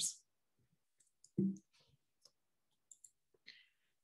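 A pause in a woman's talk: near silence broken by a short, hummed vocal sound about a second and a half in, a few faint clicks, and a soft breath shortly before speech resumes.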